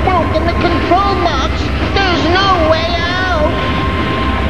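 Cartoon soundtrack: a steady low rumble like an engine under a run of wordless, rising and falling voice-like cries.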